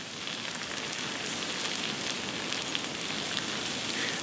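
Thin potato slices frying in olive oil on a teppanyaki griddle at about 180 °C: a steady sizzling hiss with fine crackles, growing slightly louder.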